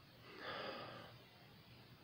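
A man sniffing a glass of hard cider to take in its smell: one long inhale through the nose, about a second long, starting shortly after the beginning.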